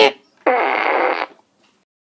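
A single raspy fart noise with a buzzing, wobbling pitch, starting about half a second in and lasting just under a second.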